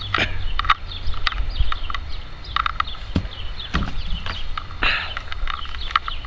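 Short, repeated bird calls over a steady low rumble, with a few sharp knocks scattered through.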